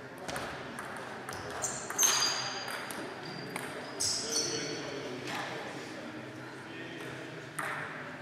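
Table tennis ball clicks off bats and table in a rally, then bounces away. The loudest hits, about two and four seconds in, are sharp pings with a short high ring, echoing in a large sports hall.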